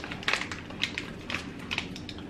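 Crinkling and crackling of MRE plastic ration pouches being handled and torn open, in short irregular crackles.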